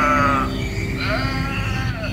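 Jingle music with held notes, overlaid by two wavering sheep bleats: the first ends about half a second in, and the second starts about a second in and lasts about a second.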